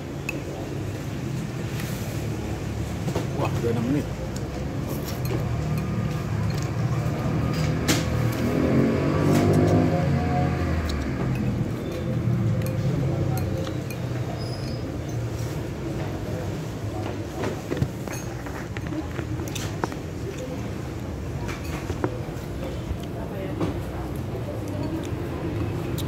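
Steady road-traffic rumble, with a vehicle passing loudest about nine to eleven seconds in, and scattered light clinks of chopsticks against a ceramic bowl.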